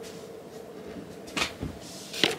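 Handling noise: a faint steady hum, then about one and a half seconds in a short knock followed by a dull thump, as a hand reaches for the camera.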